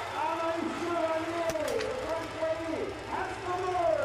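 Voices in the stadium calling out in long, drawn-out gliding tones, with a few faint sharp cracks around the middle.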